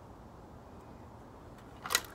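Low, steady outdoor background noise, then near the end a single brief, sharp swish as an arm swings a red plastic part of a Yonanas dessert maker overhead.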